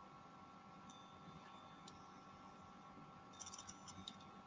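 Near silence: room tone with a faint steady hum, and a few faint clicks near the end.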